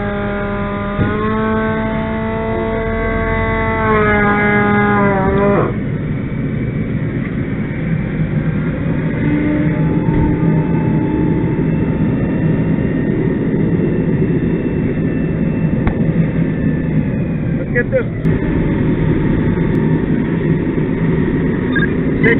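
Fire engine's diesel engine and fire pump running steadily at the pump panel while supplying hose lines. For about the first six seconds a loud steady pitched tone sounds over it; it steps up slightly, then slides down and stops.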